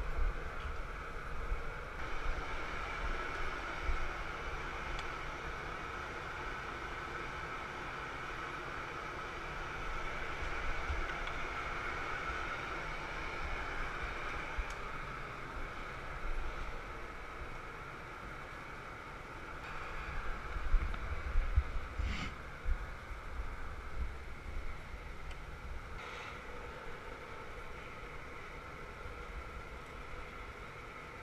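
Steady roar of a glassblowing studio's gas-fired furnace and blowers, with low rumbling and a couple of light knocks about two-thirds of the way through.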